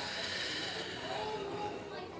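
Indistinct, distant voices over a steady hiss of room noise.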